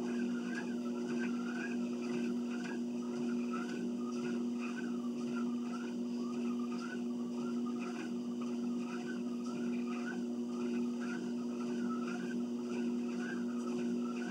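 Home exercise machine running under steady use: a low mechanical hum with a whirring squeak that rises and falls about twice a second, in time with the workout strokes.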